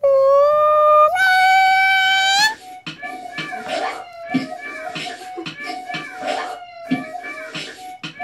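An indri's soaring, wailing call: a long held note, then a jump to a higher note that rises slightly, lasting about two and a half seconds. Then, from about three seconds in, a beatboxed music track with a steady beat of about two hits a second under a held note.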